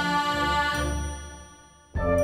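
Orchestral music in waltz style: a held chord that fades away from about halfway through into a brief near-silent pause, before the music comes back with a sudden attack at the very end.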